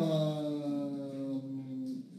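A person's voice holding one long drawn-out vowel for nearly two seconds, its pitch sinking slightly before it stops.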